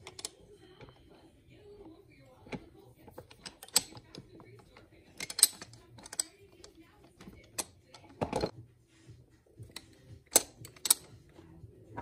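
Steel gears and shift forks of a Mitsubishi 6DCT470 twin-clutch transmission being handled and seated by hand. They make irregular light metallic clicks and clinks, with a few louder knocks.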